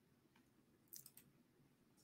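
Near silence with two faint computer-mouse clicks about a second in.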